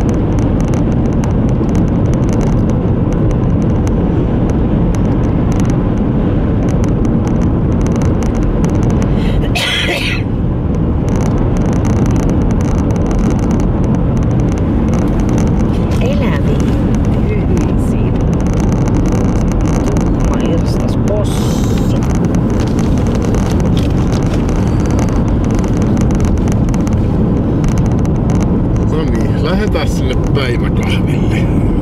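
Steady road and engine noise inside a Mercedes-Benz cruising at highway speed, loud and low, with a brief rush of hiss twice.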